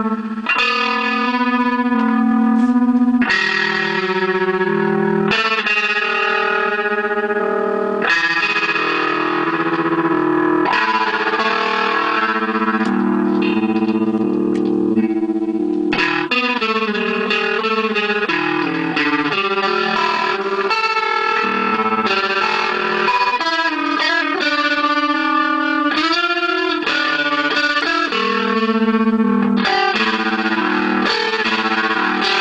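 Electric guitar played through overdrive and a Moog MF-102 ring modulator pedal. Long held notes change every couple of seconds, then a quicker run of notes follows from about halfway.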